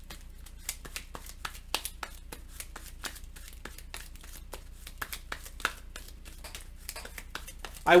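Light, irregular clicks and taps of board-game cards and cardboard tiles being picked up, slid and set down on a table, several a second.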